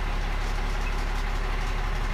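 Cummins diesel engine of a 2017 Mack truck idling steadily, heard from inside the cab.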